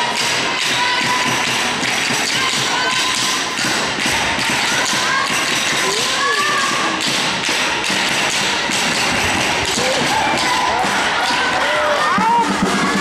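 Indoor handball play in a sports hall: repeated thuds of the ball and running feet on the hall floor, with players' shouts, all echoing in the hall.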